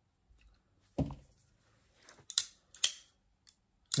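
Winter Blade Co Severn folding knife handled at close range: a soft thump about a second in, then a few sharp clicks as its back lock and blade are worked.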